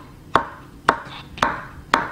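Chef's knife slicing cucumber on a wooden cutting board: four sharp knocks of the blade meeting the board, about one every half second.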